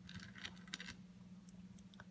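Faint clicks and rustles of licorice allsorts candies shifting against each other and the plate as a hand picks one out, most of them in the first second, with a few light taps near the end as the candy is set on a stack. A faint steady hum runs underneath.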